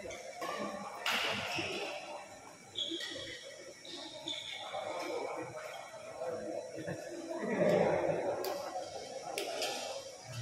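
Spectators talking in an echoing sports hall during a badminton doubles rally, with a few sharp smacks of rackets striking the shuttlecock, one about a second in and a couple near the end.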